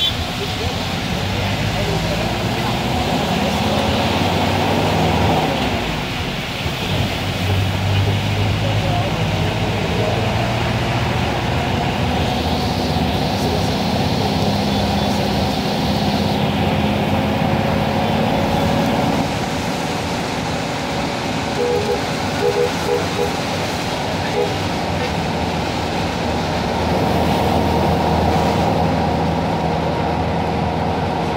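Steady car and wet-road traffic noise heard from inside a vehicle in heavy rain, with a few short beeps about two-thirds of the way through.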